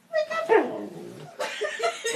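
A husky giving voice: a short call, then a longer call that slides down in pitch. A boy is laughing near the end.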